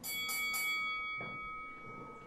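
A bell-like chime struck in a quick cluster right at the start, its several clear tones then ringing on and fading over about a second and a half.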